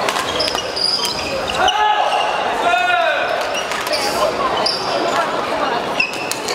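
Badminton doubles rally in a large hall: several sharp clicks of rackets striking the shuttlecock, and a few short squeals of court shoes on the floor about two and three seconds in.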